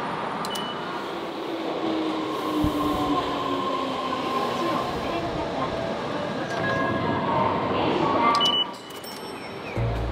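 Fukuoka City Subway Airport Line train in motion, heard inside the car: a steady rumble and rush with faint steady tones over it, dropping away suddenly about eight and a half seconds in.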